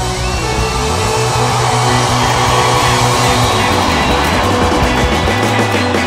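Live band music played loud and steady, with sustained low bass notes under a dense wash of sound.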